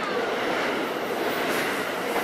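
Passenger train passing at speed close alongside a station platform: a steady, loud noise of wheels on rail and rushing air.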